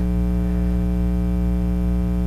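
Steady electrical mains hum on the recording, a buzz of many evenly spaced tones that holds level throughout.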